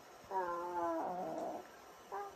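A toddler's wordless vocal sound: one long, whiny call lasting about a second.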